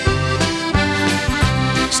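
Piano accordion playing an instrumental fill between sung lines of an Irish ballad: held chords over low bass notes that restart about twice a second.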